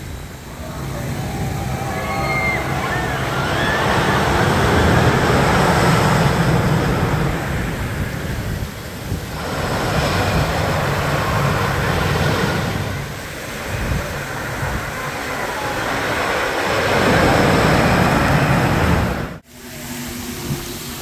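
Wooden roller coaster train rumbling along its timber track, rising and falling in several swells, with gusty wind buffeting the microphone.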